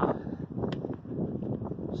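Wind noise on a handheld phone's microphone: a steady low rush, with a faint click about two-thirds of a second in.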